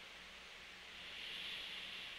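Faint hiss of background noise with a low hum, the hiss swelling slightly about a second in and easing off near the end.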